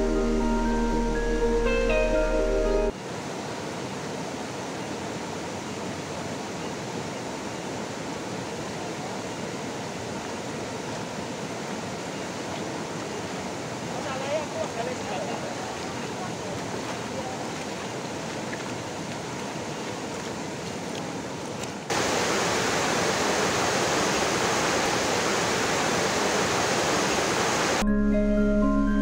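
Marimba-like background music for about three seconds, then a shallow stream running over a stony ford. About halfway through, a person's feet splash through the water, and near the end a louder rush of flowing water takes over.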